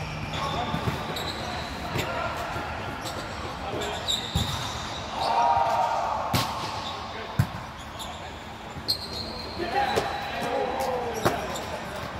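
Volleyball rally: sharp hits of hands on the ball about every one to two seconds, with players calling out, a louder shout about five seconds in, all in a large hall.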